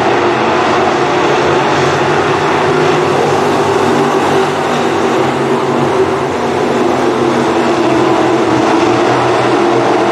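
A pack of dirt-track stock cars racing at speed, several engines running hard together in a steady, loud mix.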